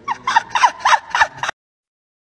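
A man's voice in a run of quick, high-pitched falling yelps, about five in a second and a half, cut off abruptly by an edit.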